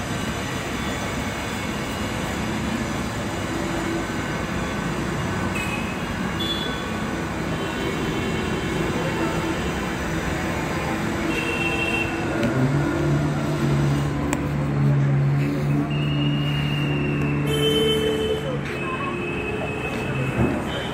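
Steady outdoor background noise with faint voices; in the second half a low, steady drone holds for about six seconds.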